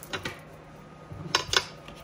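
Tarot cards being handled and pulled from the deck: a few faint clicks, then two sharp card snaps about a second and a half in.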